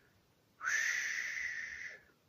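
A breathy, whistle-like 'ooh' from a man's mouth, held for just over a second and rising slightly in pitch.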